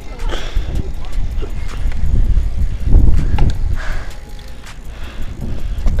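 Wind buffeting the microphone of a handlebar- or body-mounted camera as a bicycle is ridden over pavement, a rough rumble that swells about three seconds in and eases toward the end, with tyre noise and small clicks and rattles from the bike.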